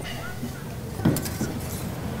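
A short clink of a utensil against a small metal pot about a second in, over steady background noise.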